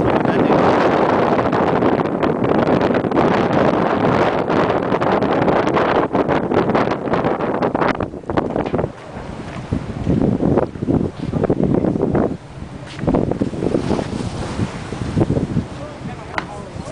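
Strong wind buffeting the microphone on a ship's open deck at sea: dense and continuous for about the first half, then coming and going in gusts.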